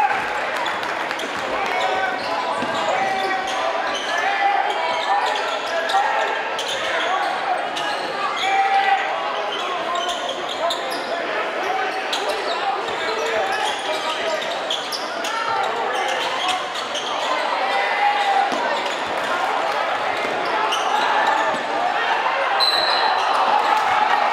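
Basketball being dribbled, bouncing repeatedly on a hardwood gym floor during play, over the steady chatter of a crowd in the bleachers.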